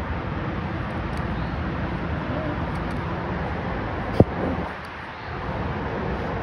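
Steady outdoor background noise, with one brief sharp thump a little past four seconds in, the loudest sound.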